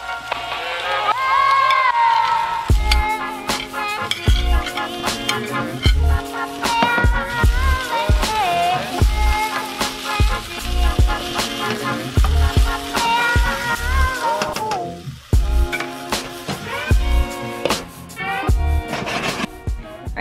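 Background music: an instrumental track with a repeating bass-drum beat and a melody line.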